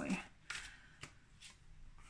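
Tarot cards being handled: a card drawn off the deck and laid onto the spread on a wooden table, giving a faint rustle and two soft card snaps about half a second apart.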